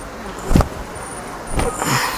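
Printed dress fabric being shaken out and swung close to the microphone: a sharp swish about half a second in, then a longer hissing swish near the end.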